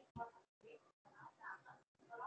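A faint, low voice murmuring, cut by several brief dropouts to total silence.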